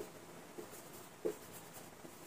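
Marker pen writing on a whiteboard: faint scratching strokes, with one brief, slightly louder short sound just past the middle.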